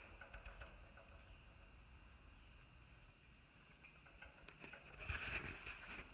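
Near silence: faint outdoor background with a steady high faint hiss, and a few light clicks and rustles near the end.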